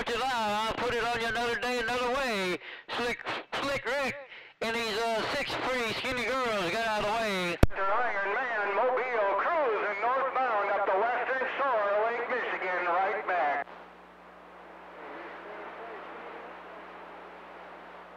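A man talking, then a sharp click and another voice coming in thin and narrow over a CB radio receiver, with the signal meter reading about S4–5. When that voice stops a little after halfway, the open channel carries on as a steady hiss with a low hum.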